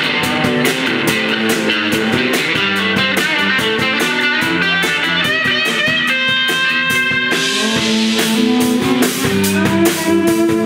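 Live rock band playing: electric guitars over a drum kit, with steady drum and cymbal strokes and a few long held high notes about six to seven seconds in.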